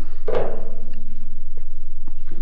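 A man's brief 'hmm' a quarter second in, trailing off into a faint held hum, over a steady low hum.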